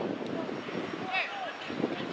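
Players and coaches shouting short calls across an outdoor football pitch, the loudest call about a second in, over a steady background rumble.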